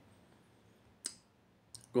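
Near silence, broken by one short, sharp click about a second in and a fainter click near the end.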